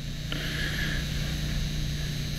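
Steady low hum, joined a moment in by an even hiss.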